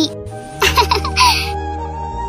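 A high-pitched, sped-up cartoon voice giggling briefly, about half a second in, over steady background music.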